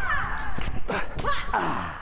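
Wordless vocal exclamations from a man swinging from a gymnastics bar and dropping onto a crash mat: a few short knocks, then a cry sliding down in pitch about a second in, then a soft rush of breath or noise near the end.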